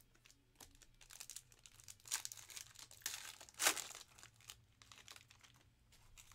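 Foil trading-card pack wrapper crinkling and tearing as it is opened by hand, in short scratchy bursts, the loudest about three and a half seconds in.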